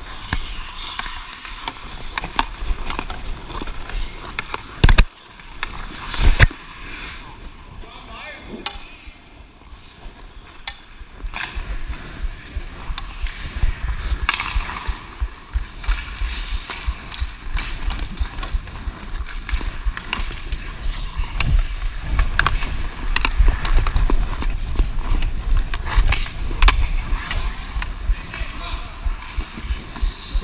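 Ice hockey skate blades scraping and carving on ice, with small clicks from a hockey stick, heard close from a body-worn camera. Two sharp knocks come about five and six seconds in, and a low rumble grows louder through the second half.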